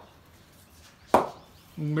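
A single sharp knock of a cricket bat striking a ball, a little over a second in, one of a steady run of batting strokes in practice.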